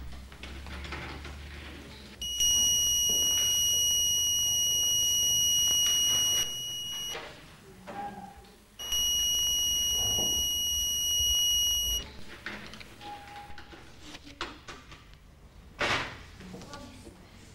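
Electronics-kit buzzer unit sounding a steady high-pitched alarm tone twice, about four and three seconds long, with a short gap between. It is a home-built smoke alarm set off by its test button through an OR gate.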